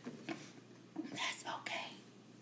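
A woman's faint whispering under her breath, in short stretches near the start and again from about a second in.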